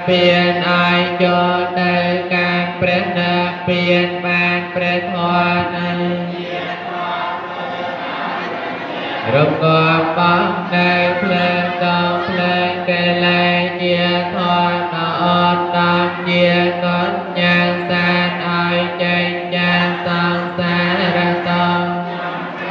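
Buddhist chanting: a steady recitation on long-held pitches over a continuous low drone, with the voice gliding up in pitch about nine seconds in.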